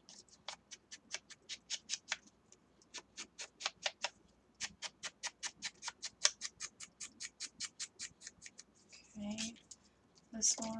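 A quick, even run of light clicks, about five a second, with a short break about halfway through.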